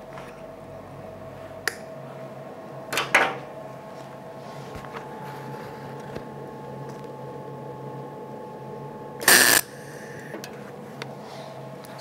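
A single quick MIG weld about nine seconds in: a half-second burst of arc crackle and hiss as a gap in thin sheet steel is filled against a copper backer, sounding "a lot better" and not blowing through. A steady low hum runs underneath.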